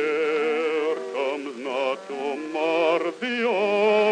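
Background music: a solo voice singing a slow, classical-style song with heavy vibrato on long held notes.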